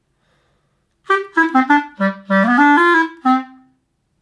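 Clarinet playing a short phrase that starts about a second in: a quick run of falling notes, a rising slide, and a last note that fades out.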